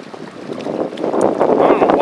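Wind buffeting the microphone, an irregular rush that builds over the first second and stays strong; a man's voice starts near the end.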